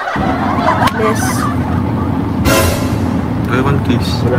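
Steady low rumble as from inside a moving car, with scattered bits of voices and a short burst of noise about halfway through.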